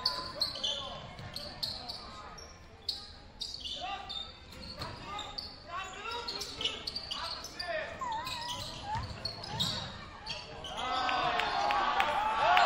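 Basketball game sounds in a gym: a ball bouncing on the hardwood court, with shouting voices from players and spectators. The crowd noise rises near the end.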